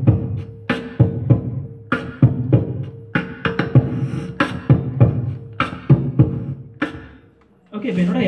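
Beatboxing into a microphone: a steady vocal drum beat of low thumps and sharp snare-like strokes, with a steady held note underneath. It stops about seven seconds in.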